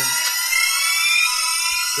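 Background music: a sustained electronic synth tone of several layered pitches, slowly rising throughout, like a build-up riser, with no beat yet.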